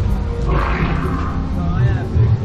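A dinosaur roar: a rough, noisy growl that swells about half a second in and lasts about a second, over crowd chatter.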